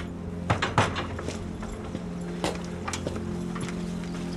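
A few sharp metallic knocks and clanks of handled tools, the loudest pair about half a second to a second in, then a couple of lighter knocks, over a steady low hum.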